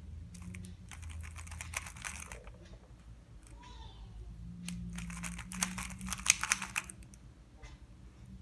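Plastic 3x3 speed cube being turned fast by hand, its layers clicking and clacking in two quick runs of turns, the first starting about half a second in and the second about four and a half seconds in.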